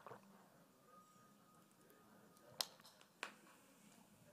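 Near silence broken by two sharp clicks a little over half a second apart, about two and a half seconds in.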